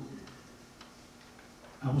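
A pause in a man's lecture: quiet room tone with a faint steady hum and a few faint ticks, then his voice comes back near the end.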